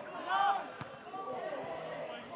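Footballers shouting to each other on the pitch, with one sharp thud of the ball being kicked a little under a second in.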